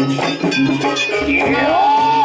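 Live jaranan campursari music: a gamelan-style ensemble playing a steady pulse with pitched percussion, and a melody line that glides up in pitch over the second half.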